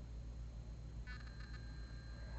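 Quiet room tone: a low steady hum, with a faint higher sound starting about halfway through.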